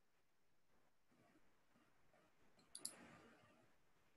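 Near silence of room tone, broken about three quarters of the way through by two quick clicks a fraction of a second apart.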